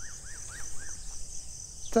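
Steady high-pitched chirring of insects in the grass, with a bird giving a quick run of about four short, arched notes in the first second.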